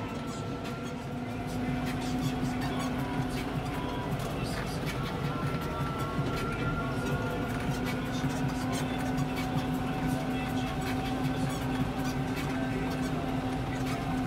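Tractor engine running at a steady speed while driving, heard from inside the cab, with light rattling clicks throughout; it picks up a little about a second and a half in.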